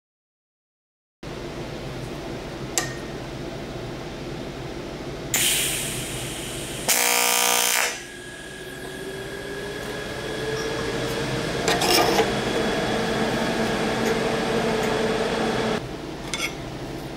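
TIG welding arc on aluminum. After a short silence there are two brief bursts of hiss and buzz, then a steady electric buzz of the arc that climbs slightly in pitch and grows louder over several seconds before cutting off at the end.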